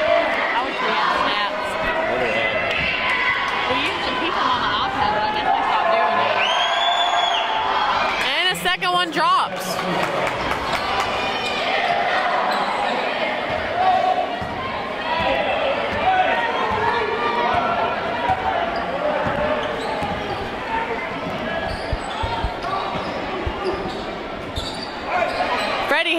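A basketball bouncing on a gym's hardwood court during play, under the steady babble of spectators' voices echoing in the hall.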